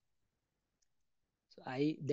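Near silence with a single faint click partway through, then a man's voice resumes speaking near the end.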